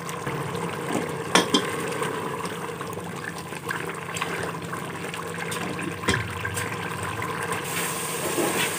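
Boiled black chickpeas frying and bubbling in oil in an aluminium pressure-cooker pot, a steady sizzle while a wooden spoon stirs them, with a couple of knocks of the spoon against the pot.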